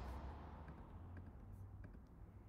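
Faint typing and clicks on a computer keyboard, a few scattered taps over a low steady hum.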